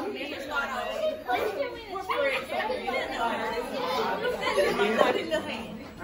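Several people chattering at once, voices overlapping with no single clear speaker.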